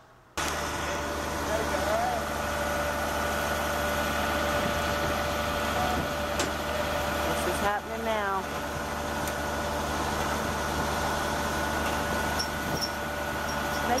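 Flatbed tow truck's engine running, with a steady whine from its winch and hydraulics as it pulls a Chevy high-top van up the tilted bed.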